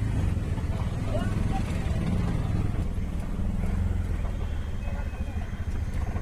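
Auto-rickshaw engine running with a steady low drone, heard from inside the passenger cabin as it drives along a rough unpaved road.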